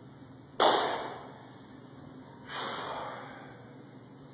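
A weightlifter's sharp, forceful breaths as he sets up under a loaded barbell for a front squat: one loud sudden exhale about half a second in, then a softer one about two seconds later.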